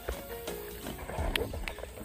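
Background music, with pigs grunting as they crowd around a feeder.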